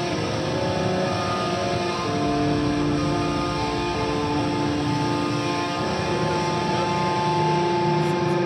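A live metal band playing, with distorted electric guitars holding long sustained chords over bass, the chords changing every few seconds.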